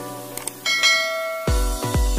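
A bright, ringing bell chime sounds about two-thirds of a second in, over light background music. About halfway through, an electronic dance beat with heavy bass hits comes in.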